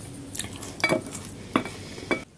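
Wooden spoons scraping and knocking against a bowl, scooping up the saucy leftovers: a few sharp scrapes and clicks, the loudest about a second in.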